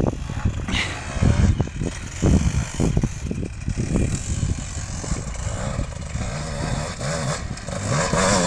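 Off-road motorcycle engine coming down a rocky gully, its revs rising and falling with the throttle, growing louder toward the end as it approaches.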